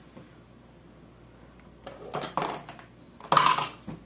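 Light clicks and knocks of kitchen items being handled on a table, starting about halfway through, with a louder knock near the end.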